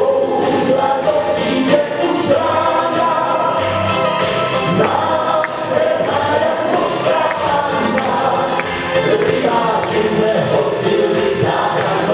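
A man singing a song into a handheld microphone over instrumental accompaniment, amplified through a PA in a hall.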